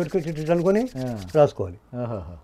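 A man talking, with a scratchy rubbing noise over his voice during the first second or so.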